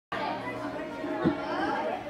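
Several people chattering in a large gym hall, with one dull thump about a second in.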